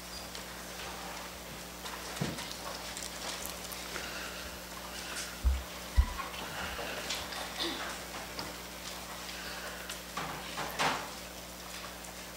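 Scattered small knocks, taps and rustling in a quiet room, with two dull thumps about halfway through and a faint steady hum underneath.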